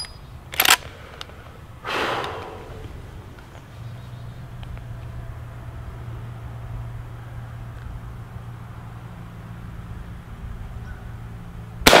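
Marlin 1894 Cowboy lever-action rifle in .45 Colt: sharp metallic clacks of the lever being worked near the start, then a quiet spell while aiming. Near the end a single loud rifle shot with a long echo rolling off.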